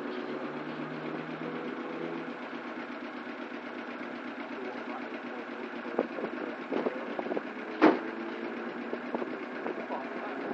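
Car engines running out on the track, a steady drone heard from trackside. In the second half there are several knocks and one sharp clack about eight seconds in.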